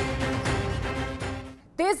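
News-bulletin theme music: held chords over a heavy bass that fade out about one and a half seconds in. A woman's voice starts just before the end.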